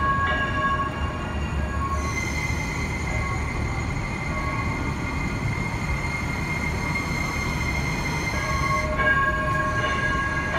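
METRO Blue Line light rail train, a Bombardier Flexity Swift car, running into a station platform and slowing: a steady rumble of wheels on rail with a cluster of steady tones at the start, which give way to a single held high whine from about two seconds in until near the end, when the cluster of tones returns.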